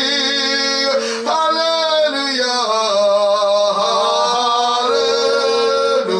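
A woman singing long, drawn-out notes with a wavering vibrato into a handheld microphone. The line breaks briefly about a second in, then slides down and climbs back up near the end.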